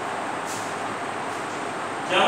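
A pause in speech filled by a steady, even background noise with no clear source, and a faint tick about half a second in.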